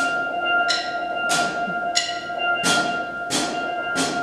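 Steel band in a slow introduction: single bright metallic notes struck about every two-thirds of a second, each ringing out and fading, over a steady held tone.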